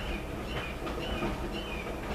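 A bird chirping over and over, short high notes about twice a second, over a steady low rumble.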